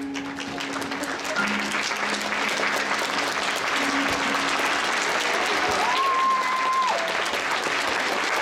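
Audience applauding steadily at the end of a dance, with the last held notes of the music dying away in the first few seconds. A short high held tone is heard over the clapping about six seconds in.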